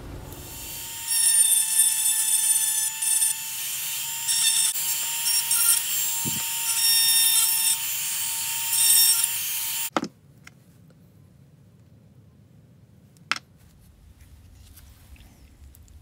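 Small handheld rotary tool with a pink grinding stone running with a high, steady whine, grinding in short spells against the edge of a thin metal shim ring. The tool stops about ten seconds in, followed by two light clicks.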